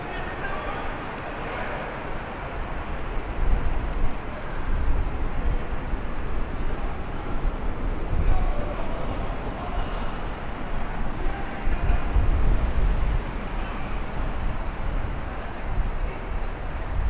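Night city street ambience: a steady wash of traffic with a deep rumble of passing vehicles that swells and fades several times, and faint voices in the first couple of seconds.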